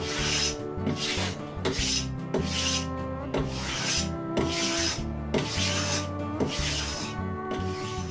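Block plane shaving the edges of thin oak side pieces, a rasping stroke about once a second, to level the sides of a box frame. Soft background music plays underneath.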